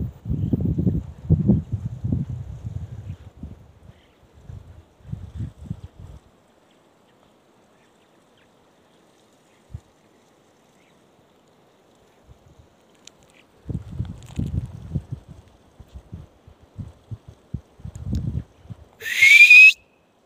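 Gusts of wind buffeting the phone's microphone in uneven rumbles, dying away for several seconds in the middle. Near the end comes the loudest sound: a person's short, loud, high-pitched cry rising in pitch.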